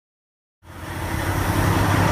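Dead silence, then a little over half a second in a heavy diesel engine's steady idle fades in as a low, even hum.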